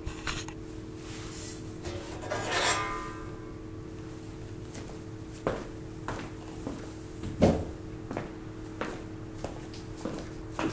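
Scattered knocks and clicks of handling, the loudest about seven and a half seconds in, with a short swishing sweep about two and a half seconds in, over a steady low hum.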